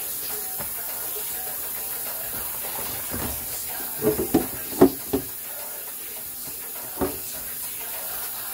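Kitchen tap running steadily into a stainless steel sink during dishwashing. A quick run of clanks from dishes or a pot knocking against the sink about halfway through, and one more near the end.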